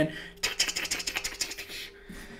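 Rapid, irregular crackling like bacon in a frying pan, starting about half a second in and running for about a second and a half. It stands for a cold acoustic guitar's lacquer finish cracking all over when the instrument meets warm air.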